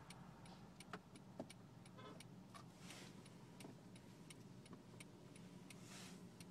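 Turn-signal indicator of a Honda CR-V ticking steadily inside the cabin, about two clicks a second, over a faint low hum of the engine.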